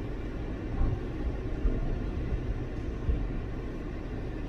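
Steady low rumble of a vehicle heard from inside its cab as it rolls slowly across a ferry's enclosed car deck, with a couple of brief low thuds, about a second in and just after three seconds.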